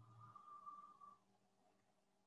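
Near silence: room tone with a faint steady hum, and a faint thin tone lasting about a second near the start.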